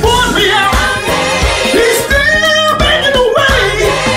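Gospel choir of women and men singing together in full voice over an instrumental backing with a steady beat.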